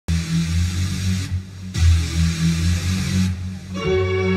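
Orchestral concert opening: low droning bass tones with a hiss over them come in two swells. Brass instruments enter just before the end.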